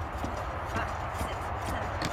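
Chest compressions on a CPR training manikin: short clicks about two a second, at a steady compression rhythm.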